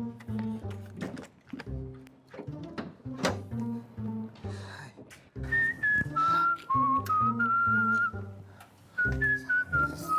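A man whistling a short wandering tune that starts about five and a half seconds in, stops briefly and picks up again near the end. Background music with a plucked bass line plays throughout.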